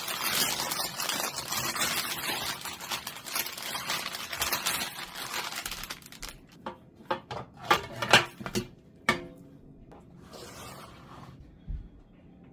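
Parchment paper rustling and crinkling for about six seconds as a baked loaf is lifted on it from a metal baking tray, then a few sharp knocks and scrapes as it is slid off onto a plate.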